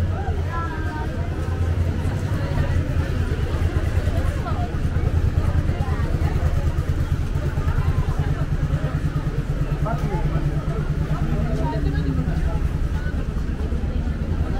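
Busy street ambience: scattered talk of passers-by over a steady low rumble.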